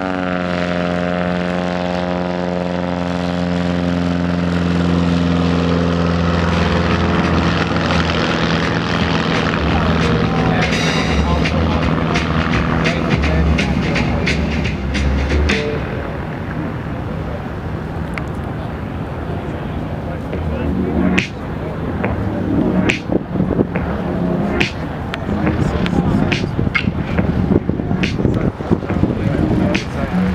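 A light piston-engine airplane with a propeller runs past close by. Its engine note falls in pitch as it goes by and fades out over the first several seconds. After that an even background noise remains, with a run of sharp knocks in the last seven seconds.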